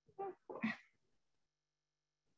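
Two short vocal sounds in quick succession, each well under half a second, the second slightly longer.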